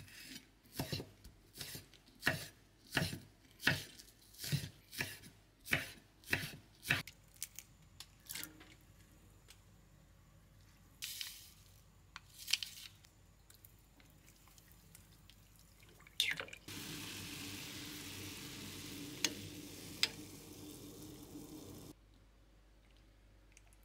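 Chef's knife chopping green onion on a wooden cutting board, one sharp strike about every 0.7 s for the first seven seconds. After a few scattered knocks, a stainless pot of bean-sprout soup simmers on a gas hob from about 17 s on, a steady bubbling noise with two small clicks near the end.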